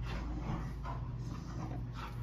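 Dogs wrestling in the background, faint, over a steady low hum.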